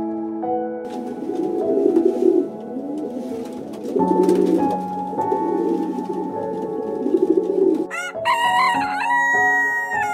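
Feral pigeon cooing repeatedly in low, warbling coos for most of the stretch, then a rooster crowing twice near the end, over steady background music.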